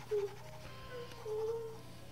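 Mobile phone ringtone playing a simple tune of short steady notes, the longest held for about half a second, over a low steady hum.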